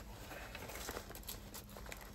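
Faint rustling and small scuffs of nylon bag fabric as hands work a tactical fanny pack's front phone pouch.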